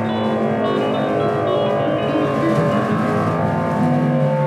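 Improvised experimental drone from electric guitar through effects pedals and electric bass: dense layers of sustained, overlapping tones holding steady, without clear drum strikes.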